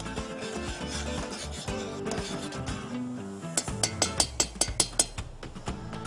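Background music, with a metal spoon rubbing and then clinking rapidly against a stainless-steel saucepan as spiced milk is stirred. About ten quick clicks come a little past halfway through.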